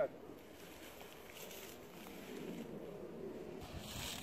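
Faint, indistinct voices murmuring quietly outdoors, with no gunshot or steel-target ring.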